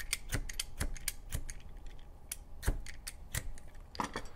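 Y-shaped vegetable peeler scraping down a potato skin in a quick series of short strokes, the blade running onto a knit cut-resistant glove finger.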